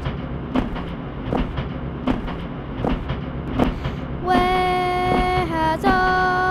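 A train running on rails, a low rumble with wheels clacking over the rail joints about every three-quarters of a second. About four seconds in, a child starts singing held notes over it.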